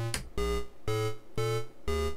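A DIY analogue modular synth's dual VCO plays a lower and a higher pitched oscillator together through a vactrol gate, triggered by a step sequencer. It gives four short, bright notes with quick attacks, about two a second.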